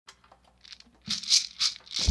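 A few faint clicks, then about a second in a shaker starts rattling in a steady rhythm, roughly three shakes a second, as the opening of a music track.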